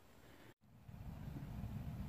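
Faint low background rumble with no distinct event. The sound drops out completely for a moment about half a second in, at an edit.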